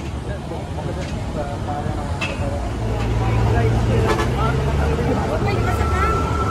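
Road traffic with people's voices around: a heavy vehicle's low engine rumble grows louder from about halfway, and a steady high tone begins near the end.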